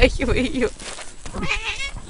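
A cat yowling in distress, in wavering cries, as it is pulled up out of deep snow.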